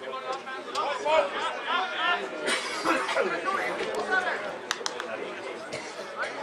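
Several people talking at once, overlapping chatter of spectators by the pitch, with a few short sharp clicks near the end.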